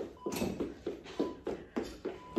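Sneakers stepping on a wooden floor during quick knee raises, about three or four soft steps a second.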